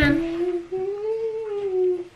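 A person humming one long note that rises a little and falls back, dropping lower near the end.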